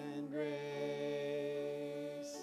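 A young girl and a man singing a duet, holding one long steady note together over a soft accompaniment. The note fades away near the end.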